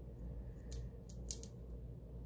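Paper and sticker sheets handled at a craft desk: three short crisp ticks, the loudest about a second and a third in, over a faint steady low hum.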